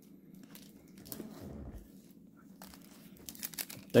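Light crinkling and soft clicks of baseball cards and plastic wrapping being handled, the clicks growing more frequent near the end.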